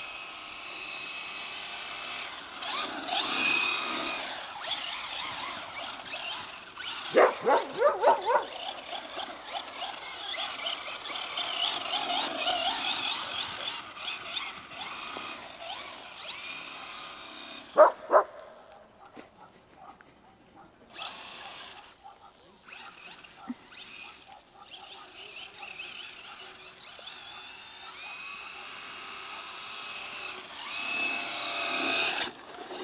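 Electric motor and drivetrain of a Traxxas Slash 4x4 RC truck whining, rising and falling with the throttle as it drives and slides on ice. A dog barks several times in quick succession about seven seconds in, and twice more around eighteen seconds in; these barks are the loudest sounds.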